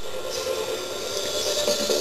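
Steady background hiss with a faint low hum, no distinct events.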